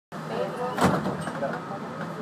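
Several people talking in the background over a steady hum, with one sharp knock a little under a second in.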